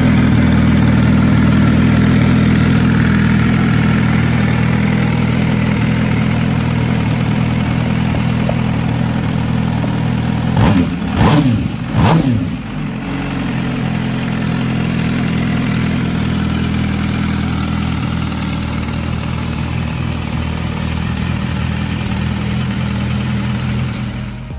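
MV Agusta Brutale Rush 1000's 998 cc inline-four engine idling steadily, with three quick throttle blips about halfway through before it settles back to idle.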